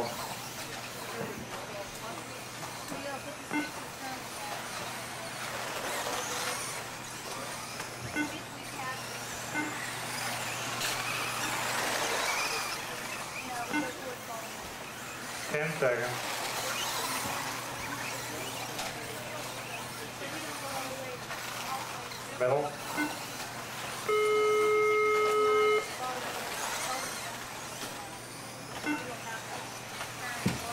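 Electric off-road RC buggies racing on an indoor dirt track, their motors whining up and down in pitch as they pass, over a background of voices. About two thirds of the way through, a loud steady buzzer tone sounds for about two seconds.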